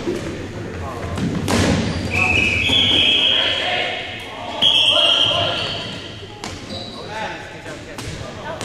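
Dodgeballs thudding and bouncing on a hardwood gym floor, echoing in the hall, with players' voices calling out. A shrill, steady tone sounds about two seconds in and again about five seconds in.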